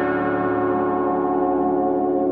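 Slow ambient meditation music tuned to 432 Hz: layered, sustained ringing tones that hold steady and waver gently, with no beat.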